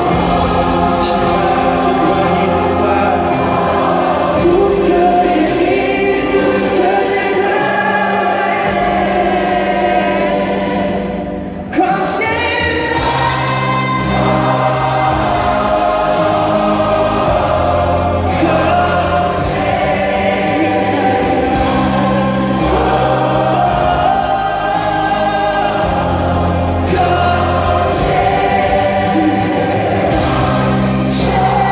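A large mass choir singing a pop ballad with a male solo voice and a string orchestra, played live. Near the middle the music briefly drops away, then comes back in sharply.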